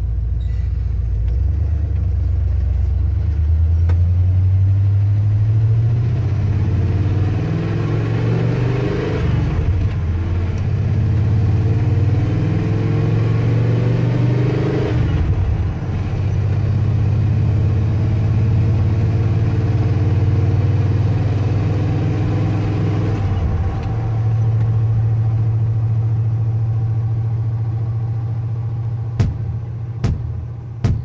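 Carbureted pickup truck engine heard from inside the cab, pulling away and shifting up through the gears of its manual gearbox: the engine note climbs, drops at each shift, then holds steady at cruise. A few sharp clicks near the end.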